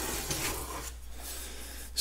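Soft rubbing and scraping as a long steel pinch bar is handled and picked up from among the tools, strongest in the first second.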